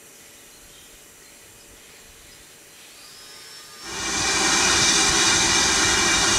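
BR Standard 9F steam locomotive blowing off steam: after a quiet start, a loud, steady rush of escaping steam sets in about four seconds in and holds.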